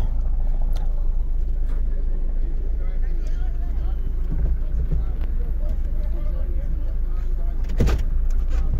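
Steady low rumble of a moving car's engine and road noise, heard from inside the cabin, with faint voices underneath.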